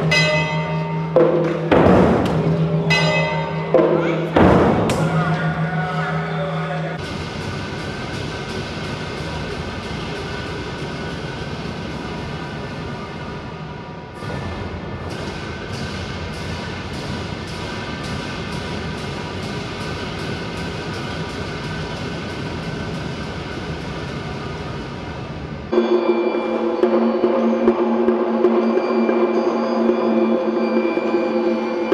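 A large ceremonial drum and a bronze gong struck a few times, each stroke ringing on with a held low hum. Then a sustained musical passage with a light, regular ticking, changing near the end to another held, pitched sound.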